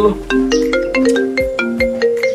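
Mobile phone ringtone playing a quick marimba-like melody of short, bright notes.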